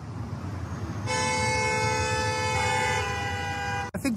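Several car horns honking at once in a traffic jam, held together as one long discordant chord from about a second in until just before the end. The chord changes partway through as some horns shift or drop out, over the rumble of the stationary traffic.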